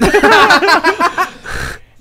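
Men laughing loudly, the laughter dying down after about a second and a half.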